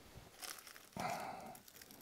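Faint rustle of crumpled tissue paper under hands handling sword fittings, a short crinkle about a second in, after a few light clicks.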